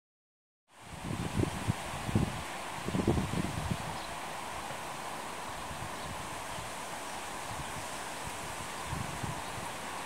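Wind outdoors, coming in about a second in: a steady rush of wind and rustling leaves, with low gusts buffeting the microphone over the first few seconds and once more near the end.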